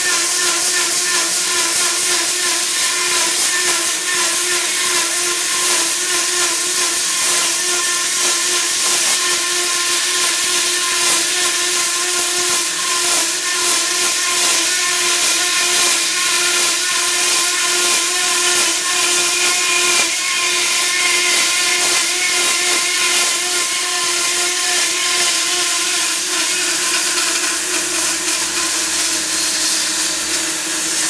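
Industrial horizontal band saw cutting steadily down through a large round workpiece: a continuous whine of the running blade and drive with the hiss of the teeth in the cut.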